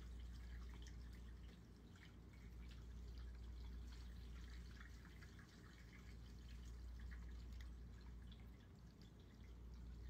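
Faint water dripping and trickling, heard as small irregular ticks over a low steady hum, which listeners take for a sump pump running.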